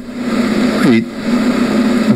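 A man's voice speaking haltingly: a long held "uh" with a short "he" about a second in.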